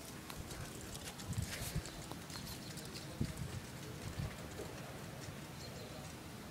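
Faint footsteps on a paved path: a few soft, uneven thumps, mostly in the first two-thirds.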